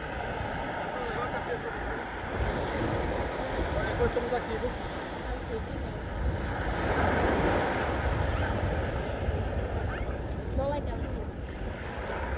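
Small waves breaking and washing up the sand at the shoreline, with wind rumbling on the microphone. The surf swells louder about halfway through, then eases.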